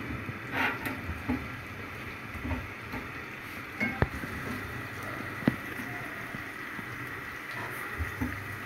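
Sliced onions frying in hot oil in a pan while a spatula stirs them: a steady low sizzle, with scraping and a few sharp taps of the spatula on the pan.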